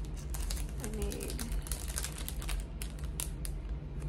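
Small clear plastic bags of carded earrings being handled, giving a quick, irregular run of small sharp clicks and crinkles that thins out near the end. A steady low hum runs underneath.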